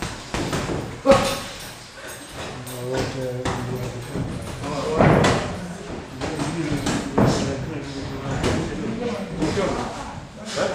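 Boxing gloves landing punches in a sparring exchange: scattered sharp thuds, the loudest about a second in and about five seconds in, among people's voices calling out around the ring.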